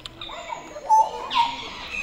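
Short whistled bird calls in the forest: a couple of brief notes about a second in.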